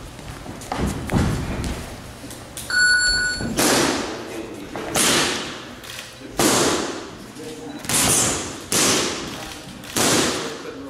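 A short electronic beep about three seconds in, then boxing gloves punching focus mitts: about five loud, sharp smacks, roughly a second to a second and a half apart, each ringing out in a large room.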